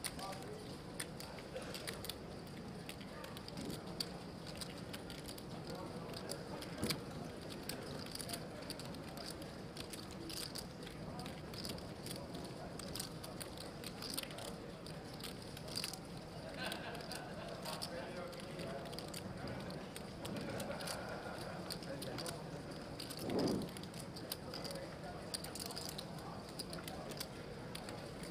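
Quiet murmur of a poker tournament room with scattered light clicks of clay poker chips being handled at the table. There is a brief louder sound about 23 seconds in.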